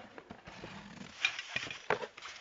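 Handling noise as a handheld camera is picked up and moved: rustling and several knocks, the sharpest just before the end.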